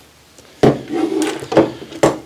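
A twin-tail fall-arrest lanyard with a steel carabiner and scaffold hooks being put down: a loud sharp knock about half a second in, a short rattle, then a second knock.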